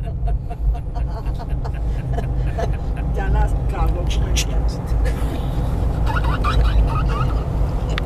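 Steady low rumble of road and engine noise inside a moving car's cabin, with faint voices talking over it.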